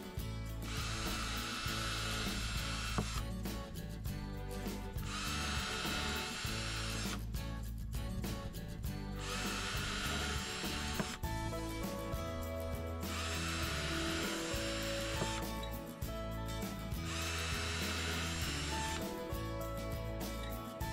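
Cordless drill boring pilot holes into wooden strips: five runs of about two seconds each, a few seconds apart. Background music plays underneath.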